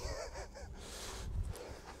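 A faint, brief wavering animal call in the first second, over a low steady rumble.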